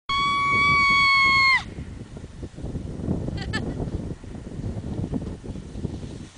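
A loud, high, steady shriek from a person's voice, held for about a second and a half and dropping in pitch as it cuts off. After it, wind rumbles on the microphone, with a brief faint squeak about midway.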